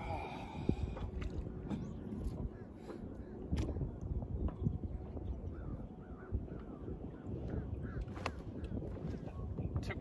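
Low rumble of wind on the microphone with scattered knocks from handling gear on a kayak, and a faint bird calling a few times near the middle.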